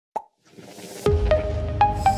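Animated logo intro music: a short click, a rising whoosh, then about a second in a deep bass hit that holds under three plucked notes climbing in pitch one after another.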